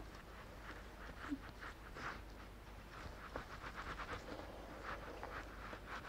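Faint, irregular soft taps and rubbing of fingertips blending liquid foundation into the skin of the face.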